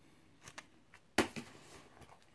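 Packets of tobacco being handled and set down: a couple of faint clicks, then one sharp rustling knock just over a second in as a pouch is put down.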